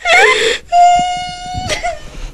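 A woman weeping aloud: a sharp sobbing outcry, then one long held wail that fades near the end.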